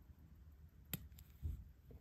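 A single sharp, faint click about a second in, with a fainter click just after: the chronograph pusher of an Omega Speedmaster Professional (calibre 3861) being pressed, snapping the chronograph seconds hand back to zero.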